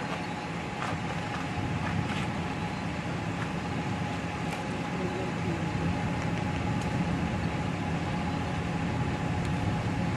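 Steady low rumble of an idling car engine, with a faint steady high tone running over it.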